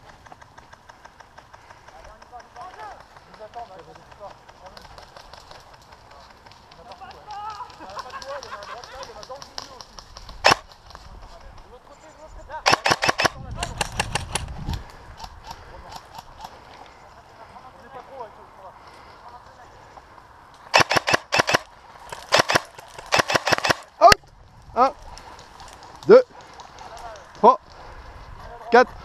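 Airsoft guns firing in several short bursts of rapid clicks, with single shots between them. The bursts come in two clusters, one about 13 seconds in and one about 21 to 24 seconds in.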